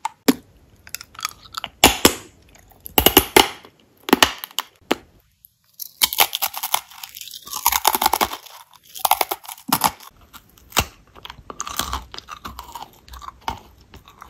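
Close-miked chewing of crisp crackers and cookies: loud, irregular crunches in clusters, with a short pause partway through.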